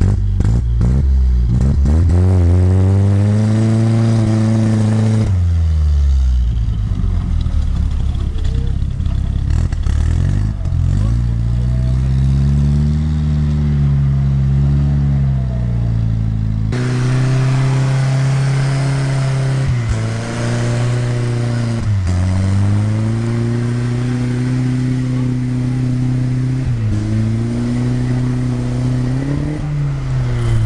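A UAZ off-roader's engine revving hard under load as it climbs a muddy slope. Its pitch rises and falls in long swells several times as the driver works the throttle, with an abrupt drop about halfway through.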